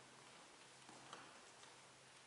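Near silence: room tone with a faint low hum and four faint ticks about half a second apart.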